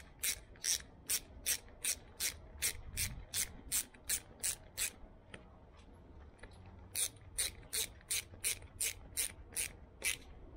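Socket ratchet clicking steadily, about three to four clicks a second, as a 10 mm bolt is run in. The clicks pause for about two seconds just past the middle, then resume.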